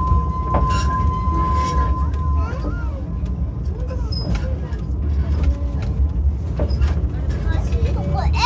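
Steady low rumble of a train ride behind a small steam locomotive, with scattered clicks and knocks from the running gear and track. A steady high-pitched tone sounds over it for the first two seconds or so, and voices are heard faintly.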